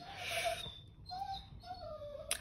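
Faint, high-pitched whining calls of an animal, three short ones, after a soft hiss at the start.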